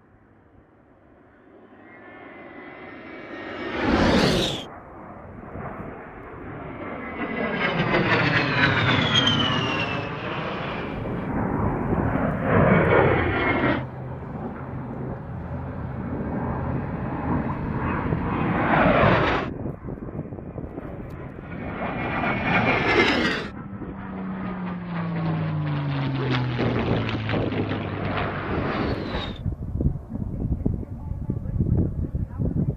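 An A-10C Thunderbolt II's twin turbofan jet engines whining through a series of low flybys, each pass with a falling Doppler pitch. The sound swells from near quiet in the first two seconds, and the loud passes are joined by abrupt cuts.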